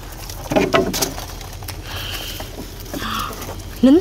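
Yard-long bean pods being snapped off the vine and handled, with a quick run of crisp snaps and rustling about a second in.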